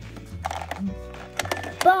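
Several light plastic clicks and knocks: a toy figure sliding down a plastic tower slide and dropping into a plastic toy car, mostly in the second half. Music with a steady low beat plays underneath.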